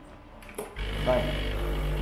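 A Breville espresso machine's pump starts suddenly, a faint click and about three-quarters of a second in, and runs with a steady hum as it pulls a double espresso shot.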